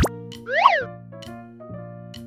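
A cartoon sound effect: a short springy boing about half a second in, its pitch rising and then falling, as the correct answer is marked. Under it runs a light children's background music loop of held notes.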